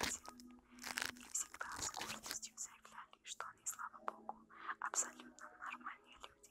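A faint whispering voice in short, irregular bursts, over a steady low hum.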